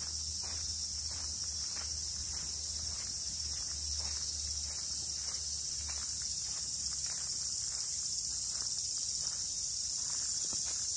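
A steady, high insect chorus shrilling without a break, with footsteps crunching on a gravel path underneath at roughly two steps a second.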